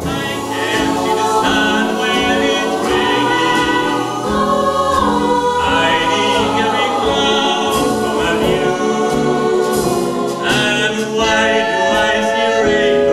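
Mixed choir of men and women singing in harmony, accompanied by a jazz big band.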